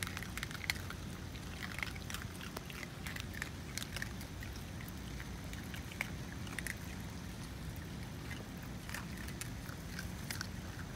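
Several raccoon dogs eating dry food pellets, with many short irregular crunches and clicks of chewing and of pebbles shifting under them, over a steady low rumble.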